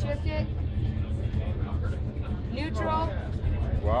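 Brief bursts of people's voices over a steady low rumble.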